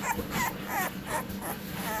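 Very young bully puppy, eyes only just open, whimpering in a quick run of short, high squeaks while it is away from its mother.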